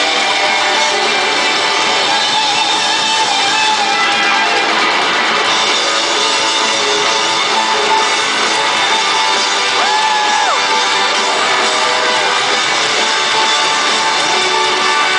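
Loud live rock music heard from an arena audience: piano, electric guitar and drums, with singing, a note held and bent briefly about ten seconds in.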